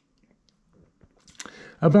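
Near silence with a few faint ticks, then a short mouth noise and intake of breath about a second and a half in, just before a man resumes speaking.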